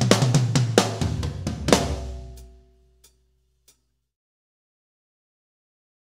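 Drum kit playing a busy fill of snare, toms and bass drum over a low sustained note. It ends on a final hit about two seconds in that rings out and dies away within a second, followed by two faint clicks.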